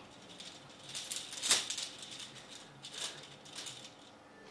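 Metal chains rattling and clinking in several short bursts, loudest about one and a half seconds in.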